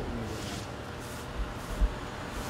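Quiet outdoor background noise: a steady low rumble with two short dull bumps in the second half.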